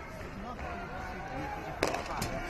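A padel ball struck once by a racket near the end, a sharp crack over a low murmur of voices in the hall.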